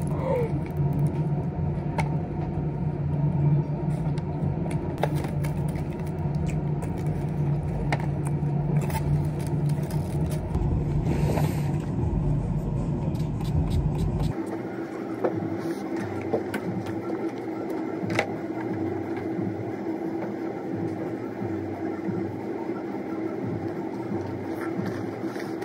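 A low steady rumble of background noise with scattered crinkles and clicks of aluminium foil being handled while a burrito is eaten. About 14 seconds in the rumble cuts off abruptly, leaving a quieter hum with one steady tone and a few light clicks.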